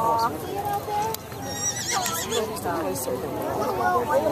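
A Chincoteague pony whinnying: a short, high, wavering call about one and a half seconds in, over the talk of onlookers.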